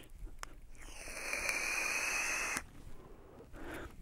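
A draw on a box-mod vape: a steady airy hiss of air through the atomizer, starting about a second in and lasting about a second and a half.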